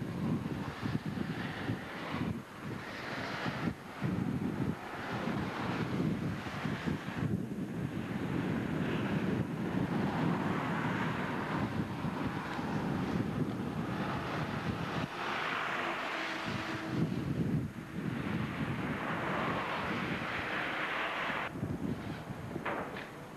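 Gusty wind buffeting an outdoor camcorder microphone, a rushing noise that keeps swelling and dipping, with road traffic passing near the middle.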